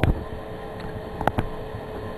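Small electric startup blower on a charcoal gasifier running steadily, drawing air in through the gasifier's air nozzle, with a faint steady hum and a few light clicks.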